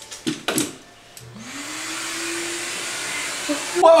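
A small handheld electric motor starting up with a rising whine, then running with a steady whir and hiss for about two seconds before it stops.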